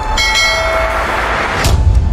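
Intro sound effects for an animated logo: a bell-like chime with several ringing tones just after the start, then a hissing swell that builds into a whoosh and a deep boom near the end.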